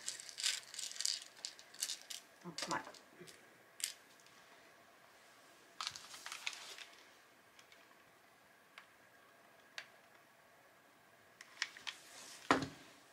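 Small acrylic beads clicking and clattering against one another as fingers sort through a tray of them, in quick bunches early on and again a few seconds later, then only the odd single tick.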